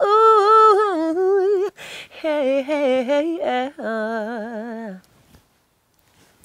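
A woman's voice singing a wordless melody with a wide vibrato, in three phrases that each sit lower in pitch than the last. There is an audible breath about two seconds in, and the singing ends about five seconds in.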